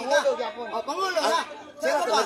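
Speech only: a man talking animatedly in a face-to-face argument, with a short pause near the end.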